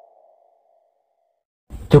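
A faint, fading tone that dies away over about a second and a half, then near silence, with a voice starting to narrate in Indonesian just before the end.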